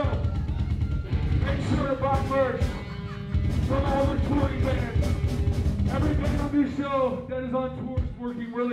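A live rock band playing loud, with drums, electric guitar and shouted vocals, heard from among the crowd.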